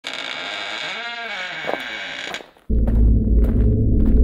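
Channel-intro sound effects: a bright, shimmering sound of many tones with wavering pitches, which cuts off about two and a half seconds in. A moment later a louder deep rumble begins.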